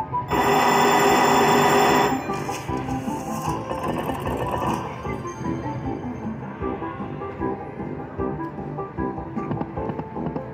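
Huff N' Puff video slot machine's bonus-round music and sound effects, opening with a loud electronic bell ringing for about two seconds, then the game's plucked, guitar-like tune playing on.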